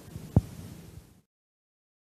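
Faint room hum with one short, low thump about half a second in, then the sound cuts off abruptly to silence just after one second.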